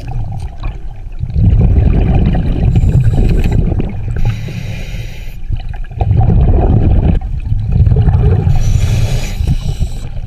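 Scuba diver breathing through a regulator underwater: a hiss on each inhale followed by a longer, louder bubbling exhale, about two full breaths.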